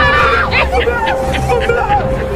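Several voices shouting and yelling in a jumble, with a few sharp high cries about half a second to a second and a half in, over steady background music.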